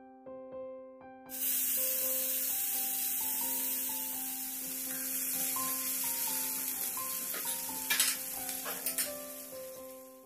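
Sliced onions frying in hot oil in a stainless steel pan, sizzling steadily while stirred with a spatula on the way to golden brown; the sizzle starts suddenly about a second in. Two sharp knocks of the spatula on the pan come near the end.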